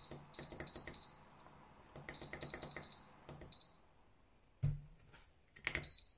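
Button-press beeps of a DL24P electronic load tester as its discharge current setting is stepped down: short high beeps in two quick runs of about five each, a couple more, then one more near the end. A soft thump about five seconds in.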